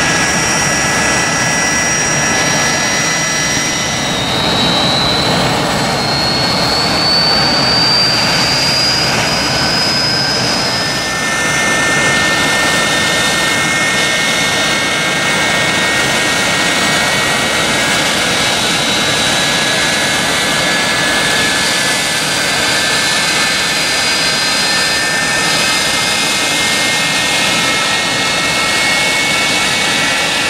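McDonnell Douglas MD-87 air tanker's twin rear-mounted Pratt & Whitney JT8D turbofans running at taxi power: a steady jet roar with high turbine whines. About four seconds in, one whine rises in pitch for several seconds.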